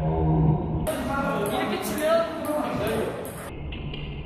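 A voice speaking, with quiet background music under it.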